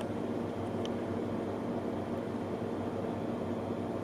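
Steady, even background hum and hiss with no distinct events.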